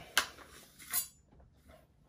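A large chef's knife drawn out of its plastic blade guard: a sharp click, then a brief scraping slide of the blade about a second in.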